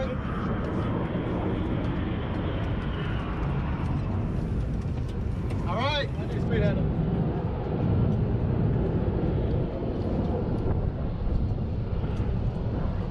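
Steady rumbling noise of an airfield flight line, heaviest in the low end and with no clear engine tone, and a brief voice about six seconds in.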